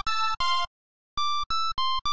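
Reason's Thor synthesizer playing a bright, high-pitched patch of a detuned pulse oscillator with an FM pair oscillator adding a higher pitch. It plays short notes at changing pitches, each cut off abruptly: two notes, a pause of about half a second, then four more.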